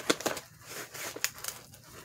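Packing tape and a cardboard box being pulled and pried at, rustling and crackling, with a few sharp clicks and snaps near the start and again later; the tape is still holding.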